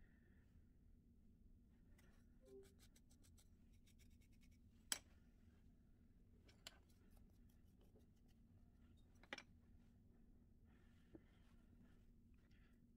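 Near silence: quiet room tone with a faint steady hum, broken by a few soft handling clicks and taps as the clay pot is moved on its wooden board, the sharpest about five seconds in and another just past nine seconds.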